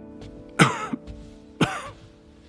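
A man coughing twice, about a second apart, hard sudden coughs: an ailing man who is about to be offered medicine.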